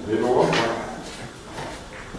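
A short burst of a person's voice lasting under a second near the start, then only background.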